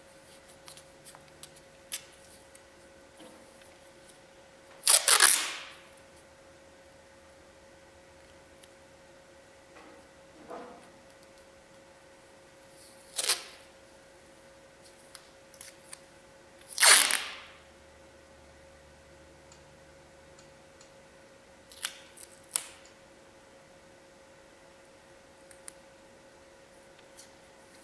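Green painter's masking tape being pulled off the roll and torn, in short rips: two longer ones about five and seventeen seconds in, and several shorter tears and clicks between, over a faint steady hum.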